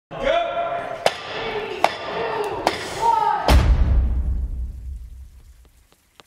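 A voice for about three seconds, cut by sharp clicks roughly every second. About three and a half seconds in comes a deep booming hit, which fades away over the next two seconds.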